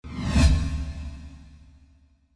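Cinematic whoosh sound effect for a title reveal: a sudden swell that peaks in a deep boom about half a second in, then a low ringing tail fading out over the next second and a half.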